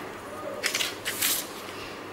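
Scissors snipping through thin dry broom sticks: two short cuts about half a second apart, near the middle.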